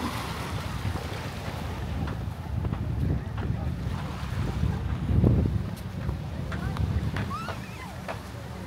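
Wind buffeting the microphone, loudest in a gust about five seconds in, over small waves washing onto the sand and the distant voices of swimmers.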